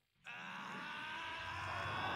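Faint anime episode audio: one long held cry from a character, slowly getting louder and lasting about two and a half seconds.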